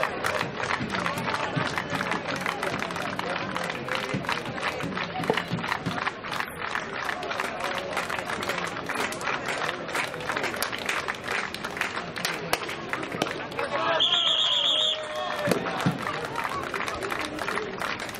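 Spectators at a pesäpallo match, their voices and clapping going on without a break. About fourteen seconds in, a whistle is blown for about a second.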